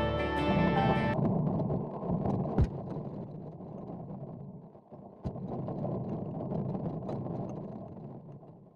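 Background guitar music stops about a second in, leaving muffled wind and rolling noise from the moving road bike, with scattered light clicks, fading out toward the end.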